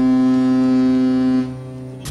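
Ship's horn sounding one long, steady blast that drops away about a second and a half in.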